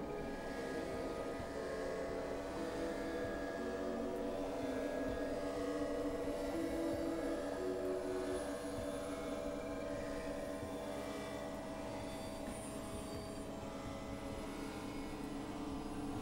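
Experimental electronic drone music: several sustained synthesizer tones held together over a steady noisy rumble, with some of the tones shifting to new pitches every few seconds.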